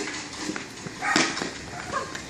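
A football being dribbled and kicked on asphalt, with quick footsteps: a few short knocks, then a louder burst a little over a second in.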